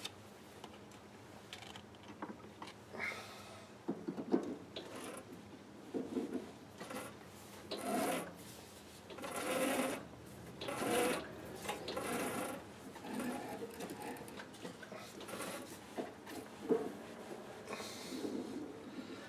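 Threading die being worked by hand on freshly cut brass thread: short, irregular scraping and rubbing strokes about a second apart, with the lathe stopped.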